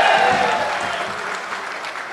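Audience applauding, loudest at the start and dying down over the two seconds.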